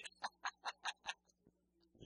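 A quick run of short laughs, about five a second, that dies away after about a second.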